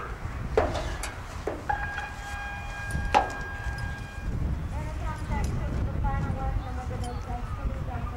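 Wind rumbling on the microphone at an outdoor arena, with a few sharp knocks and a steady held tone for about two seconds in the first half. In the second half a distant voice is heard, typical of a public-address announcer.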